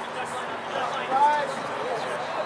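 Distant voices of players and spectators calling out across a soccer field over a background of murmur, with one drawn-out shout about a second in.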